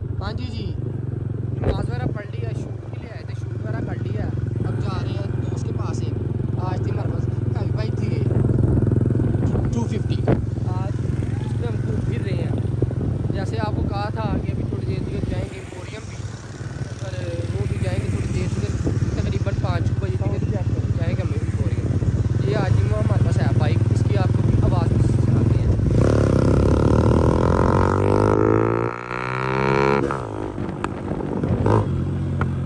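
Motorcycle engine running steadily as the bike rides along a road, a low even hum with a brief dip about halfway through.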